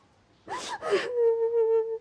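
A young woman crying: two short, breathy gasps about half a second in, then a long wailing sob held on one high pitch that breaks off abruptly at the end.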